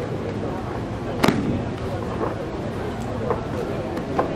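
A sharp slap on the mat about a second in, the sound of an aikido breakfall as the partner is thrown, followed by a few fainter knocks, over the background talk of an audience in a hall.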